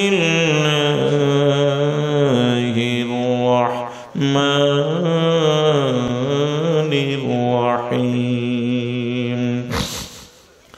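A man's voice chanting a Quranic verse in Arabic, melodic tilawah, in long drawn-out, ornamented notes over a microphone. There are two long phrases, with a brief breath about four seconds in, and the chant stops just before the end.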